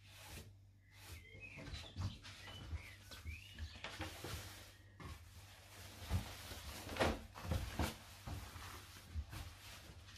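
Fabric rustling and flapping as a cut garment is lifted, turned over and laid back down on a table, with light knocks and taps against the tabletop; the loudest swish comes about seven seconds in.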